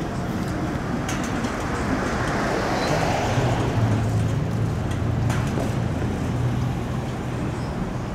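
Road traffic noise: a vehicle passing swells and fades about halfway through, over a steady low hum.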